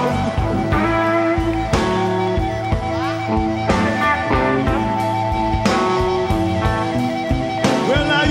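Live blues-rock band playing an instrumental stretch of the song, with electric guitar prominent over a steady beat.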